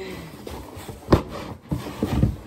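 A cardboard shipping box being handled and shifted, with a sharp knock about a second in and a softer one shortly after.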